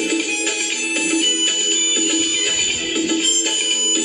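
Harmonica playing the melody of a Bollywood film duet in held, changing notes, over a plucked-string accompaniment.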